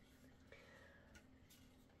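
Near silence: room tone, with a couple of faint clicks about half a second and a second in.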